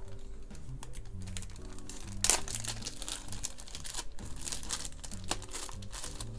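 Clear plastic card sleeve crinkling and crackling as a card is worked out of it, with one sharper, louder crackle about two seconds in. Soft background music with held notes plays underneath.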